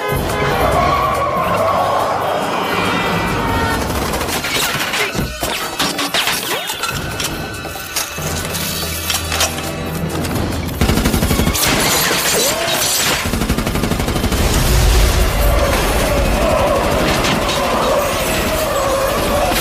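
Action-film chase soundtrack: driving score music mixed with rapid gunfire and glass shattering, over the rumble of car engines that gets heavier about eleven seconds in.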